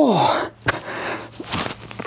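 A man breathing hard through sit-ups: a strong, breathy exhale at the start, then quieter breaths with a short click about a third of the way in.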